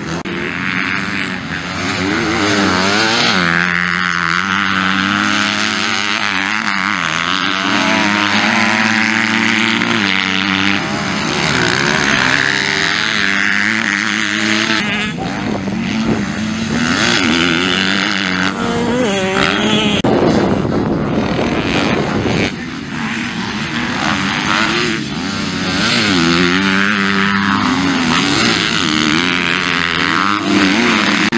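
Motocross dirt bikes racing past one after another, their engines revving up and dropping back repeatedly as the riders go through the corners.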